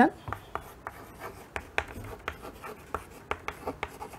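White chalk writing a word on a chalkboard: a quick run of short, irregular taps and scratches as the letters are stroked out.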